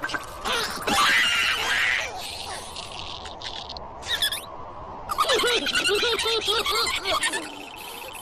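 Cartoon characters' wordless vocal noises: wavering squeals and grunts through the second half, after a short noisy sound-effect burst about a second in.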